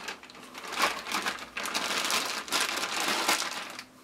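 Clear plastic bag crinkling and rustling in irregular bursts as a shotgun wrapped in it is handled and lifted out of its box.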